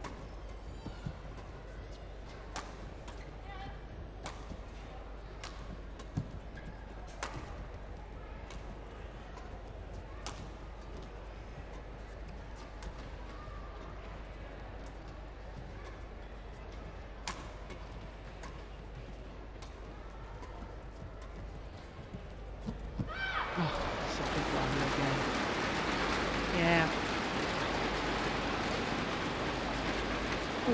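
Badminton rackets striking a shuttlecock in a doubles rally: sharp hits about a second apart, over the low hum of an indoor arena. About 23 seconds in, the rally ends and the crowd breaks into loud cheering and applause that carries on to the end.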